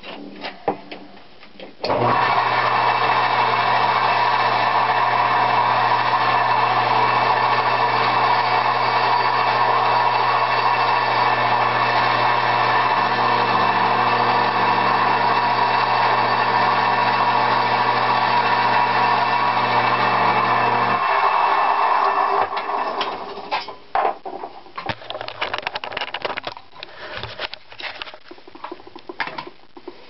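Bench grinder switched on about two seconds in, grinding a welded-up steel camshaft lobe down to shape on the wheel, running steadily for about twenty seconds before cutting off; a few light knocks of parts being handled follow.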